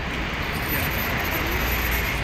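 Steady city street noise: road traffic rumbling continuously.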